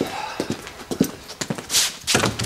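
Footsteps of hard-soled shoes on a floor, about two steps a second, with a brief rushing noise near the end.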